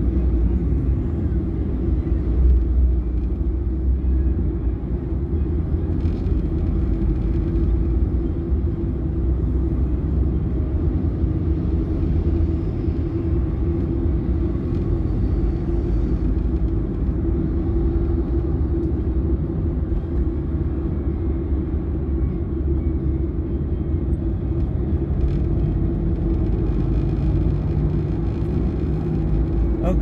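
Steady low rumble of a car's engine and road noise, heard from inside the cabin while it moves slowly in heavy highway traffic.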